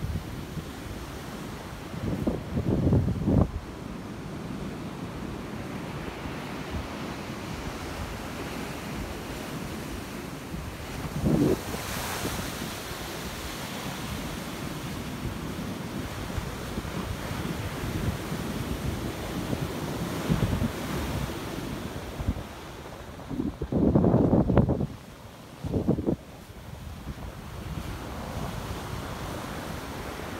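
Ocean surf washing onto a sandy beach, a steady rushing noise, with wind buffeting the phone microphone in a few louder gusts, the longest near the end.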